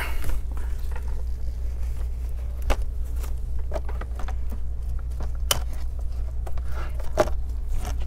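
A few light clicks and taps as a laptop LCD panel is handled and tilted up off its back cover, over a steady low hum.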